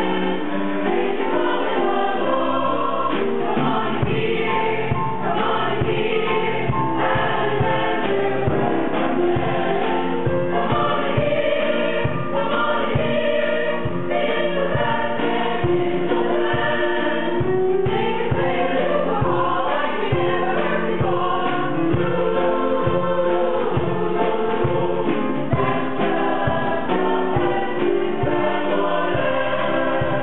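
Mixed choir of men and women singing a ragtime number, with a steady beat underneath from about four seconds in.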